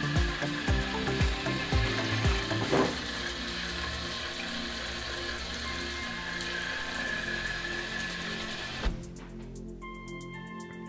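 A homemade toy vehicle's small electric motor whining steadily through its gears, under background music with a steady beat. A short knock near the end, then only music.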